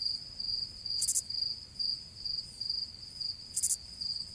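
Cricket chirping, a steady run of high chirps a few times a second, used as a 'crickets' sound effect for a dramatic silence; two brief high hisses come about a second in and near the end.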